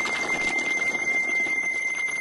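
Experimental sound-art composition: a steady high, whistle-like tone held over a dense, noisy, flickering bed, with fainter higher tones above it.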